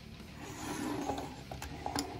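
Handling of a plastic Transformers toy figure on a wooden tabletop: a rubbing scrape for about a second, then a few light clicks as it is set down.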